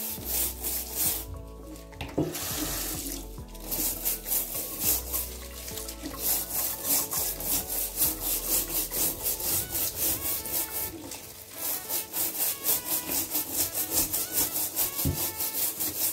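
A stiff plastic scrubbing brush scrubbing the rough, spiky skin of a whole pineapple in a stainless steel sink, in rapid repeated back-and-forth strokes.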